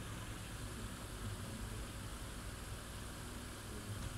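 Steady low hum with an even hiss of background noise, unchanging throughout, with no distinct sounds in it.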